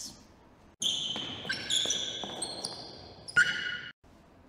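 Comedic sound effect of high squeaky tones that step between several pitches, with a few faint knocks underneath. It starts suddenly about a second in and cuts off just before the end, a deliberately mismatched footstep sound used as a bad example.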